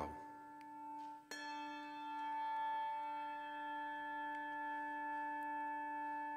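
A handbell struck once about a second in, after the last of the earlier ring has nearly died away. It rings on steadily with a clear tone and several overtones. It is tolled for each departed person named in the memorial prayer.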